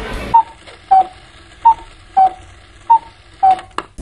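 Tick-tock clock sound effect: six short ticks about 0.6 s apart, alternating a higher and a lower pitch, used as an editing cue that time is passing while waiting.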